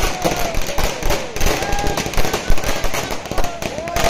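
A string of firecrackers bursting in rapid, irregular pops, with a crowd of people shouting over them.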